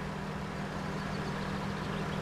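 Steady low mechanical hum of a running machine, even throughout, with a steady low drone under it.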